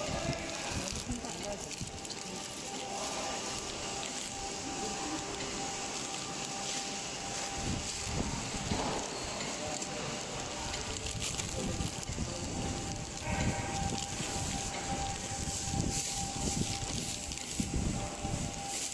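A flow-wrapping packing machine running with a steady hum, while plastic-wrapped bread loaves crinkle irregularly as they are handled.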